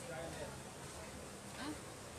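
A low, steady buzz, with faint brief voices in the background.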